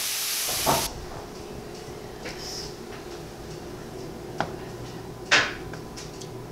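Onions and garlic sizzling in a frying pan for about a second, then cut off suddenly. Low room tone with a faint hum follows, with a light click and then a sharp knock near the end.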